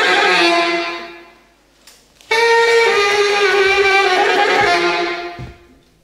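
Solo tenor saxophone: a long held note dies away in the first second or two. After a short silence, a new phrase of sustained notes starts abruptly about two seconds in and fades out near the end.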